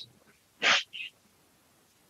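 A man's short breathy hiss through the mouth, unvoiced, about a third of the way in, followed by a faint click-like blip.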